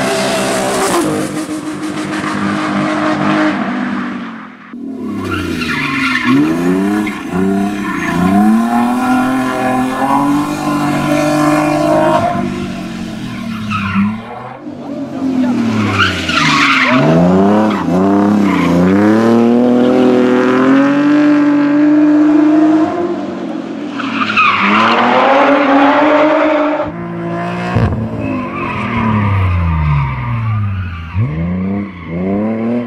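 BMW 320i E30 rally car's straight-six engine revving hard, its pitch swinging up and down repeatedly as the car is drifted through tight bends, with tyres skidding. It comes as several separate passes, each broken off suddenly.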